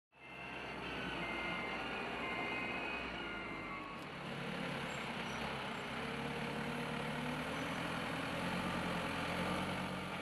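Forklift engine running steadily, with short high beeps over the first few seconds, typical of a reversing alarm. The engine note changes about four seconds in.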